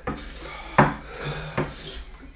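Breath hissed hard in and out through the mouth against the burn of a Carolina Reaper chilli. There is one sharp knock a little under a second in.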